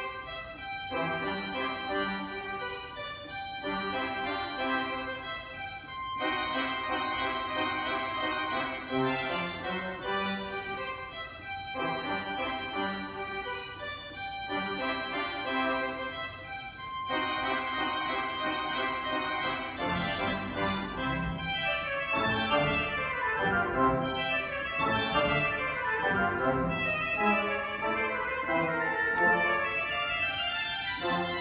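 An 18-rank Wicks pipe organ playing a classical rondo in phrases of a few seconds separated by brief breaks, the registration changing between phrases. In the last third it moves into quicker running passages.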